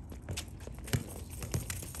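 A soccer ball being kicked and touched on a concrete driveway: a few separate sharp knocks, the loudest about a second in, with running footsteps on the concrete.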